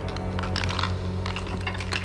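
A run of rapid, irregular sharp clicks and clatter over a steady low hum.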